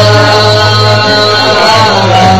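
Live acoustic-guitar-and-vocal music, with a singer holding one long note over the guitar and a steady low bass tone.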